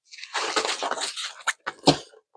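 Plastic wrap on a rolled diamond-painting canvas crinkling as the canvas is unrolled and handled. It ends in two sharp cracks, the louder one a knock near the end.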